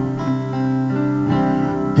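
Instrumental passage with no singing: an acoustic guitar played along with a keyboard backing, the chords changing a few times.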